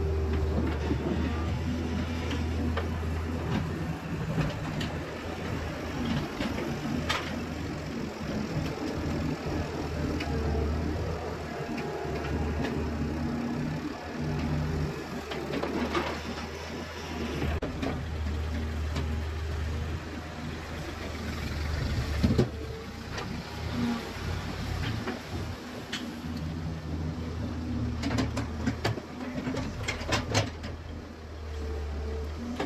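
Doosan wheeled excavator's diesel engine running under load, its level rising and falling as the arm digs and swings, with a few sharp knocks from the bucket and earth dumped into a steel truck bed; the loudest knock comes about two-thirds of the way through.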